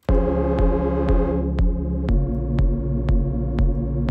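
Melodic techno pad made in Serum with its oscillator set to unison, playing a sustained chord loop over a deep bass with a steady click about twice a second. The chord changes about two seconds in.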